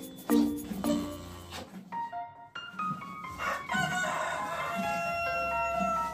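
Background music with a soft steady beat, and a rooster crowing once in the second half: one long call that falls away at its end.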